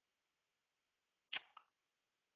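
Near silence broken about a second and a half in by one brief double sound, a sharp click followed at once by a softer one.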